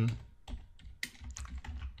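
Computer keyboard being typed on, a quick string of about nine irregularly spaced key presses.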